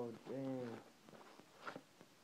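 An exclaimed voice, then faint handling of white packing material being unwrapped by hand, with one short sharp tick near the end.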